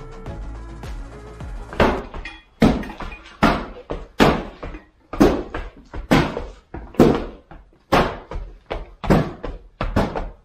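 Rubber wood-grain concrete stamp mats being pressed into a fresh slab: a regular series of heavy thuds, a little faster than one a second, starting about two seconds in after a short stretch of music.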